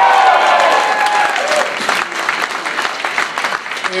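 Club audience applauding and cheering, with whoops and shouts in the first second or so; the applause then thins and grows quieter.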